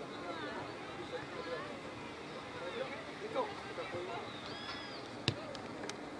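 Distant, indistinct shouts and calls of players and spectators on an outdoor football pitch, with a single sharp knock about five seconds in.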